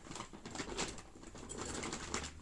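Shopping bag rustling, with light knocks of packages as items are handled and put back into the bag.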